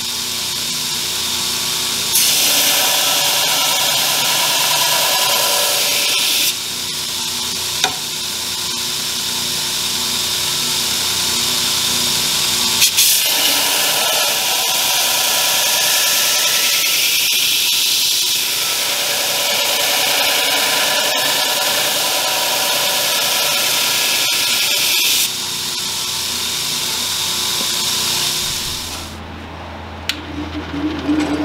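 Belt grinder running with steel held against the belt, a harsh grinding hiss that swells each time the piece is pressed on, in several passes, the longest running over ten seconds through the middle. The grinding dies away near the end.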